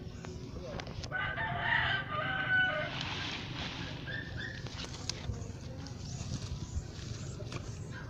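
A rooster crowing once, starting about a second in and lasting nearly two seconds, over faint knocks and rustling.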